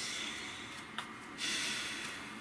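A person taking slow, deep breaths through the nose: one long breath fading away, a faint click about a second in, then the next breath beginning.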